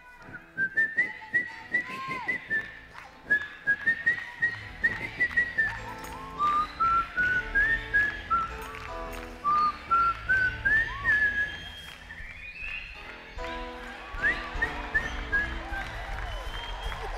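A man whistling a quick, up-tempo song melody into a microphone. From about four seconds in, keyboard chords and bass join underneath. The whistling breaks off briefly near the end, then resumes with upward slides.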